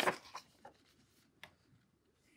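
A paper page of a picture book being turned by hand, a short swish of paper at the start followed by a few faint ticks as the page settles.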